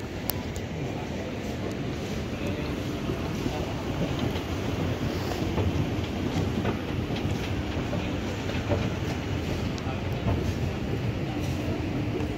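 Schneider SE-60 escalator running downward: a steady mechanical rumble of the moving steps and drive, with a faint hum and scattered small clicks. It grows louder over the first few seconds as the rider nears and steps onto it.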